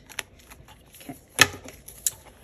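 Clear plastic cash-envelope pouches rustling as they are handled in a six-ring binder, with a few sharp clicks; the loudest click is about one and a half seconds in.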